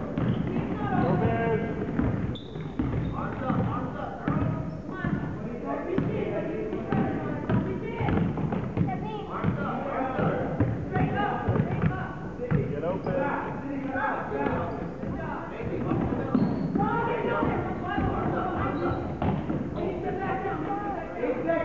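A basketball being dribbled on a hardwood gym floor, with scattered thumps, under continuous shouting and chatter from players and spectators.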